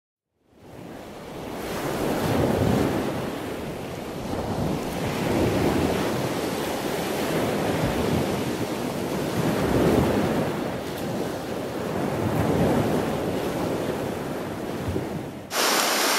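Ocean surf washing on a beach: a steady rush of noise that swells and fades every two to three seconds. Near the end it cuts sharply to a louder, even hiss.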